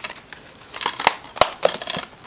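Plastic DVD keep case being handled: rustling and a few sharp plastic clicks, the loudest about a second and a half in.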